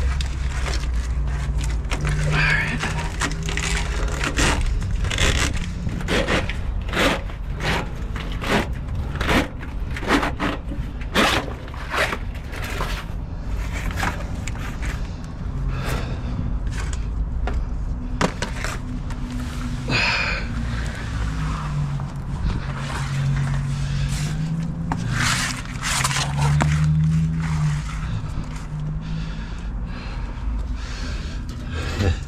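Repeated knocks, clicks and scrapes of a rubber AC hose being pulled and worked free from the underside of an ambulance body, with a low hum coming and going.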